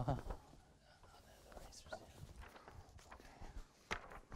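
Faint footsteps of a person walking across a room, soft irregular steps with small clicks.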